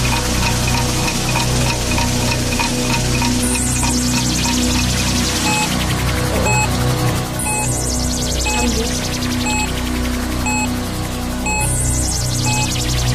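Looping electronic background music with a steady pulsing beat, swept by a falling whoosh about every four seconds.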